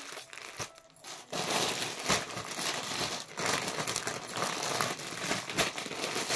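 Clear plastic packaging bag crinkling continuously as it is handled, starting about a second in.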